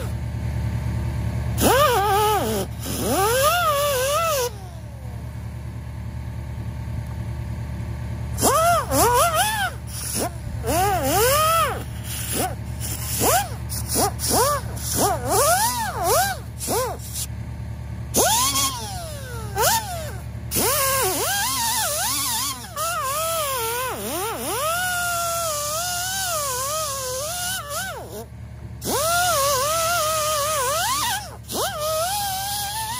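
Hand-held air tool worked against the cast-iron spokes of an engine flywheel to clean it, its whine rising and falling in pitch as it is pressed on and eased off the metal. A steady low hum runs beneath it.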